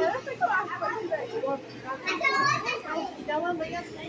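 Indistinct voices of children and adults talking over one another in a busy indoor space, with a higher-pitched voice standing out about two seconds in.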